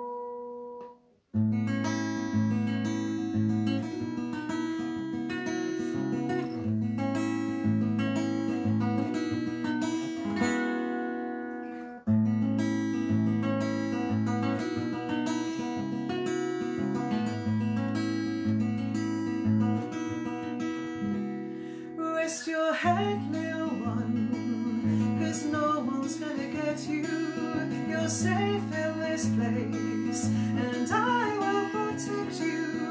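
Acoustic guitar playing a gentle song intro in a repeating note pattern, starting about a second in with a brief break near the middle. A woman's singing voice comes in over the guitar about two-thirds of the way through.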